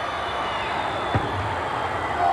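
Steady arena crowd noise from the audience, with one thump about a second in.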